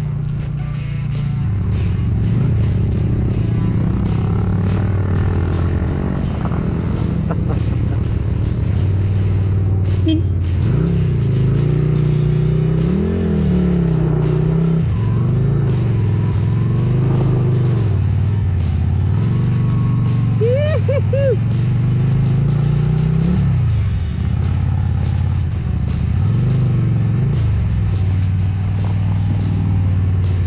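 Yamaha Virago 250's V-twin engine running under load up a dirt hill, its revs rising and falling again and again as the throttle is worked through the climb and bends.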